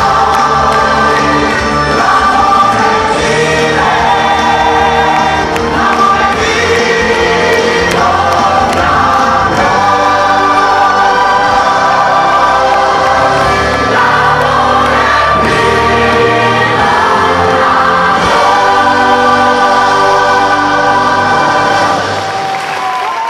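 The cast of a stage musical singing together as a choir over musical accompaniment, loud and steady.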